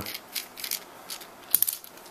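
Small screwdriver working the set screw of a guitar control knob loose: light metallic ticks and scrapes, with a quick cluster of clicks about a second and a half in.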